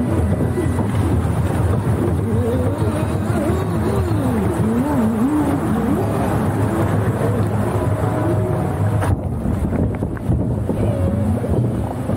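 Boat ride gliding along a concrete water channel with a steady low running hum. A wavering tone rises and falls over it through the first half.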